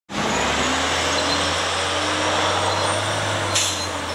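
City street traffic with a steady low engine rumble from idling vehicles, and a short high hiss a little before the end.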